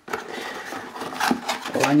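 Cardboard packaging rubbing and scraping as the inner cardboard boxes are pulled out of the box: a continuous scratchy rustle with a few sharper scrapes.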